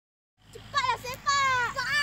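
Children's high-pitched voices calling and shouting, starting about half a second in.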